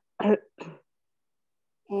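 A person clearing their throat: two short rasping sounds within the first second, then silence until speech starts near the end.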